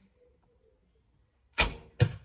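A Scythian horse bow (36 lb at 28 in), with no string silencers, shooting a wooden arrow. After a near-silent hold at full draw, the string is released with a sharp slap about a second and a half in. A second, louder sharp knock follows right at the end.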